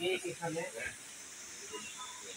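Brief, indistinct talking in the first second, then quieter, over a steady high hiss.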